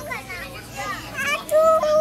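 Young children's voices calling out while they play, ending in one long, loud held call near the end.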